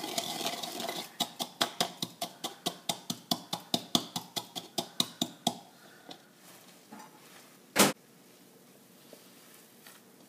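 Wooden pestle pounding cumin seeds in a wooden mortar: rapid, even knocks at about four a second, stopping a little past halfway, followed by a single louder knock near the end.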